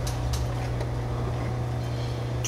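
A steady low mechanical hum runs throughout, with a few faint light ticks over it.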